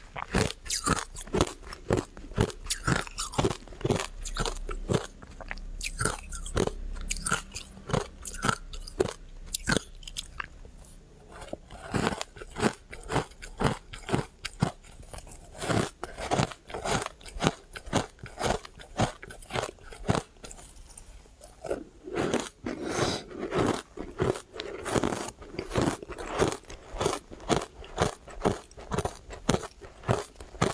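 Refrozen shaved ice dusted with matcha powder being bitten and chewed, a steady run of sharp, rapid crunches several times a second, thinning out briefly in the middle.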